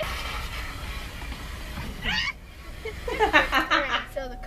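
A woman laughing loudly in quick repeated peals during the last second, after a short high vocal sound about two seconds in, over a low steady hum.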